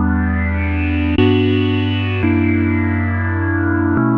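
AIR Mini D software synthesizer, an emulation of the Moog Minimoog Model D, playing sustained chords while its low-pass filter cutoff is swept, so the tone brightens and then darkens. The chord changes about a second in and again just after two seconds.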